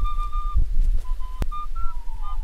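Background music on a flute: a long held note, then a few shorter notes of a melody, over a low rumble. A single sharp click sounds about one and a half seconds in.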